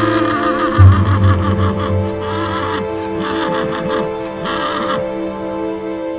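Film score music with sustained tones and a deep note coming in about a second in, while a horse whinnies over it in a long, wavering call that breaks into pulses and stops about five seconds in.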